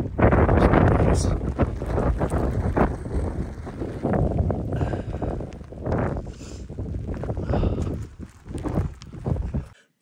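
Strong wind buffeting the phone's microphone in uneven gusts during an incoming rain shower, cutting off suddenly near the end.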